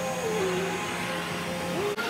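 Steady whirring of an electric hair tool in a salon, with a low hum under it.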